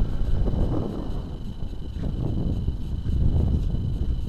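Wind buffeting the microphone in uneven gusts, with a faint steady high whine underneath.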